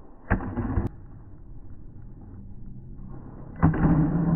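Two sharp pops of a pickleball paddle hitting the ball, about three seconds apart, each with a short echo in a large indoor court hall.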